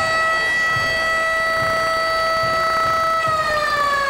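Koshien Stadium's game-start siren: one long, steady wail that begins to fall in pitch about three seconds in. It marks the start of the game as the first pitch is thrown.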